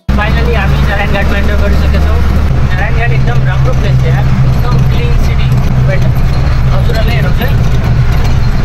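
Loud, steady engine and road rumble inside the cabin of a moving vehicle, with a man's voice talking over it.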